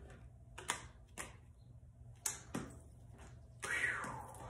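Tarot cards being handled on a table: about five sharp, separate taps and clicks, with a brief falling sound near the end.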